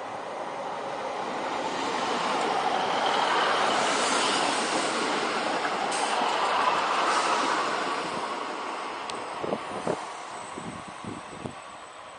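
Class 153 single-car diesel multiple unit passing close by: engine and wheel-on-rail noise build to a peak midway and fade as it moves away. A few short knocks come near the end.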